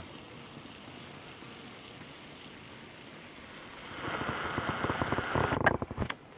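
Wind on the microphone: a steady low rush, turning to a louder, crackling buffet over the last two seconds.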